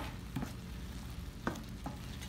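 Diced chicken breast frying in a pan with a faint sizzle while a spatula stirs it, with a few soft knocks of the spatula against the pan; the chicken still has some of its own water in the pan.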